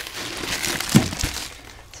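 Plastic bags and packaging crinkling and rustling as they are handled in a wastebasket, with a sharp knock about a second in.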